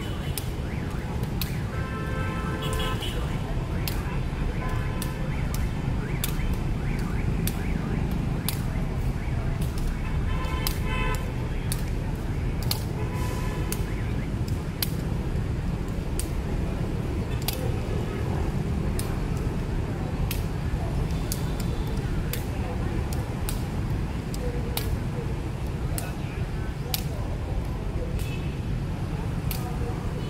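Shuttlecock being kicked in đá cầu play: sharp taps at irregular intervals, often less than a second apart, over the steady rumble of nearby motorbike traffic.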